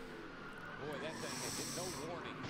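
Faint, muffled voice and in-car noise from NASCAR onboard race footage, with a high hiss in the second half.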